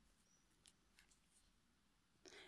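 Near silence, broken only by three very faint ticks.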